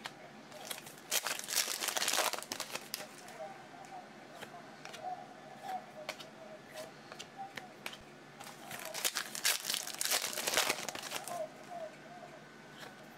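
Donruss Optic trading cards being flipped and slid off a hand-held stack, with rustling of the cards and their plastic sleeves in two bursts, about a second in and again around nine to eleven seconds in.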